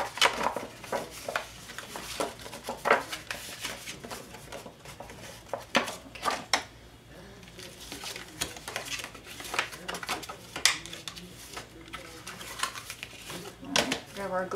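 White cardstock envelope blank being folded and creased by hand, giving a string of short, crisp paper rustles and taps spread irregularly through.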